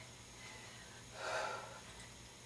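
A person's single short breath out with effort during a dumbbell curl rep, a little over a second in.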